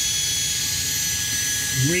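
Electric drill running steadily with a high whine, its bit reaming an angled hole into the engine's air intake tube.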